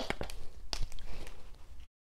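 Light desk-handling sounds from a binder and marker: a few soft clicks and rustles. The sound cuts out to dead silence near the end.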